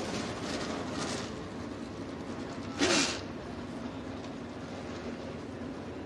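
Super late model dirt race cars rolling out onto the track, their engines heard as a steady distant din, with one short louder burst about three seconds in.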